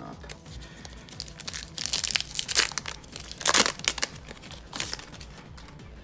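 A Pokémon booster pack's foil wrapper crinkling and being torn open, with a few sharp rips, the loudest about three and a half seconds in.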